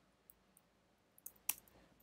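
Faint, scattered clicks of computer keyboard keys being typed, about half a dozen keystrokes, the loudest about one and a half seconds in.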